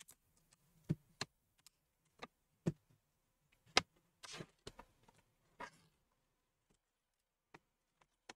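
Faint, scattered plastic clicks and a couple of brief scrapes as a laptop's plastic screen bezel is pried and worked loose from the display lid, the loudest click about four seconds in. A faint low hum runs under the first six seconds.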